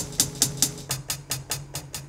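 Hi-hat sample played from an Akai MPC One's pad in quick, even taps, about five hits a second, over a low steady tone.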